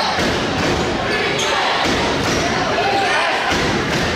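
A basketball being dribbled on a hardwood gym floor: a series of bounces that echo in the hall, over the murmur of voices in the gym.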